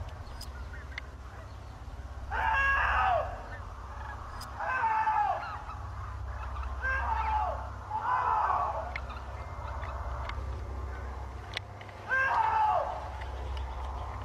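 A man's distant shouts for help, five in all, each a single call that falls in pitch and comes every couple of seconds, over a low steady rumble.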